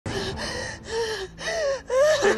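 A woman sobbing: a run of short, broken crying bursts, about five in two seconds, with her voice wavering up and down in pitch.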